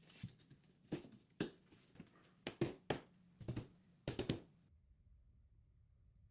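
Faint, irregular knocks and taps of a 3.5-inch PVC pipe being handled and pushed into a bored hole through the wall, about ten small strikes over roughly four seconds, then near silence.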